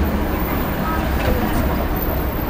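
Road traffic: a motor vehicle driving past with a low rumble that slowly fades, over a murmur of voices.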